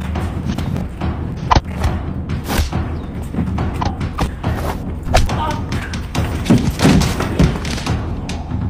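Fight-scene music with a steady low bass under a string of sharp thuds and slaps from a staged silat fight, the strikes loudest about a second and a half in, around five seconds and near seven seconds. Voices come and go among the blows.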